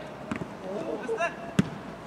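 A football kicked hard about one and a half seconds in, a sharp single thump, with a softer thump of the ball earlier, amid players' distant shouts.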